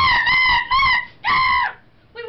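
A child's high-pitched puppet voice letting out three long, excited wordless squeals, the pitch wavering slightly, the third after a short pause.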